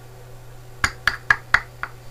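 Five quick, hard taps about a second in, over a steady low hum.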